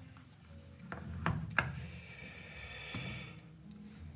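A straight razor in a black stitched leather sleeve being handled: quiet rubbing of leather, with a few sharp clicks between about one and one and a half seconds in.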